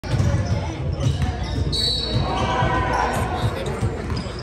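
Basketball bouncing repeatedly on a hardwood gym floor, with a sneaker squeak just before the halfway point, echoing in a large hall.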